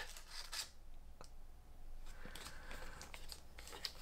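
Faint handling of Pokémon trading cards: cards sliding and rubbing against each other and the fingers, with a few light ticks spread through.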